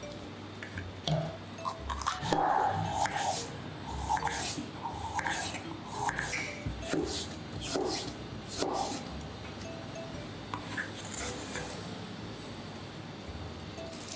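Knife slicing a green bell pepper into strips on a plastic cutting board, an irregular series of cuts and taps, over background music.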